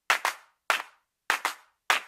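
Six sharp, dry percussion hits in an uneven, syncopated pattern with silence between them: the sparse opening beat of a pop song's intro.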